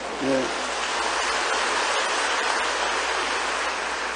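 A large congregation applauding: a steady, even wash of clapping that comes in about half a second in and holds.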